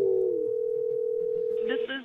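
Telephone dial tone: a steady two-note hum that cuts off shortly before the end, as a voice comes in over the phone line.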